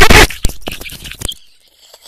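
A person's laugh, loud and harshly distorted, cutting off about a third of a second in; a few faint clicks follow.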